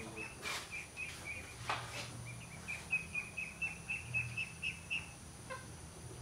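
A bird chirping outdoors in a quick series of short, high, repeated notes, several a second, with a couple of brief crackles about half a second and nearly two seconds in.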